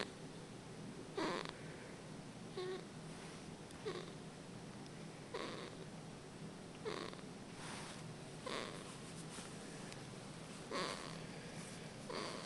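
Sleeping newborn baby breathing noisily, a short soft snore-like sound on each breath, repeating about every second and a half.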